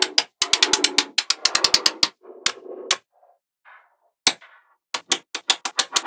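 Small magnetic balls clicking and snapping together: a dense, rapid run of clicks with a rattle for about three seconds, then after a short pause a string of separate sharp clicks, about five a second, near the end.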